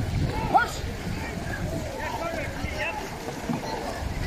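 Dragon boat paddles splashing and water rushing as the crew paddles hard, under wind noise on the microphone. Scattered faint shouted voices come and go over it.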